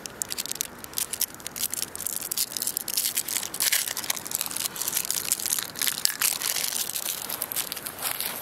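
A foil-and-paper wrapper crinkling and crackling as a coffee cube is unwrapped by hand, a dense run of small crackles.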